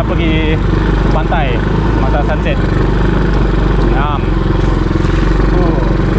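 ATV engine running steadily under way, heard from the rider's seat.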